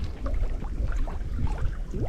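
Choppy lake water lapping and sloshing right at the microphone, with many short watery plinks over a low rumble of water and wind buffeting.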